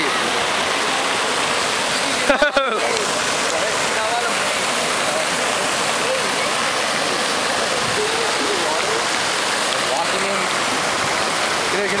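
Steady rush of fountain water splashing in a large outdoor pool, even and unbroken throughout. A brief shout comes about two and a half seconds in, and faint voices are heard later.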